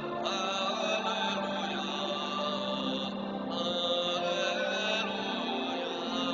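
Church music during Mass: long held chords that change slowly, with a wavering melody line above them.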